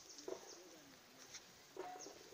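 Faint birdsong: quick, high chirps repeating throughout, with a couple of lower, dove-like cooing notes, one about a quarter second in and one near the end.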